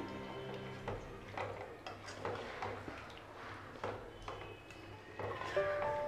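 Quiet background music, with a spatula scraping and knocking irregularly against a nonstick pot as chicken in a thick coriander masala is stirred. A melody comes in near the end.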